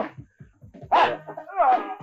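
Two short cries, each bending up and then down in pitch, over background music.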